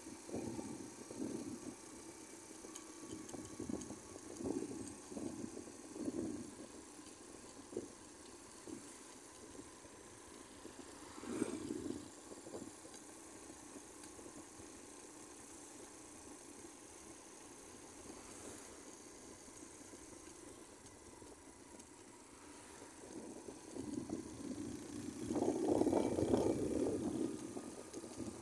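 Motorcycle on the move: a low, muffled mix of engine and wind noise that swells in uneven gusts, growing louder near the end.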